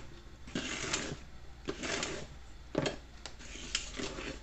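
Hand mixer's beaters, switched off, being pushed by hand through flour and cake batter, scraping and knocking against the bowl in several short, irregular bursts.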